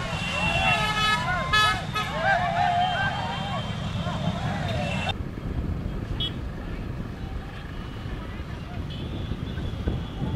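A pack of motorcycles running, their engines a steady low rumble under shouting voices and tooting horns; about five seconds in the shouting and horns cut off suddenly, leaving the engine rumble.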